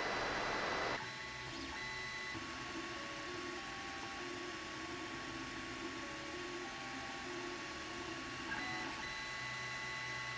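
Ender-3 Pro 3D printer converted to a vinyl cutter, running a cutting path: its stepper motors whine in short tones that step up and down in pitch as the head traces a circle, over a steady higher hum.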